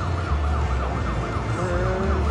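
Lou-e's Gold slot machine playing its jackpot-award sound for a Mini win: a rapid, siren-like warbling tone, with a few short lower tones near the end. A steady low hum runs underneath.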